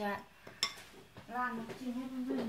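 A woman speaking in short phrases, with one sharp clink of tableware just over half a second in.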